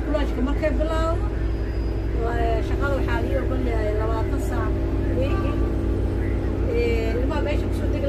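Double-decker bus interior: a steady low engine drone heard from inside the cabin as the bus moves slowly in traffic, with passengers talking over it.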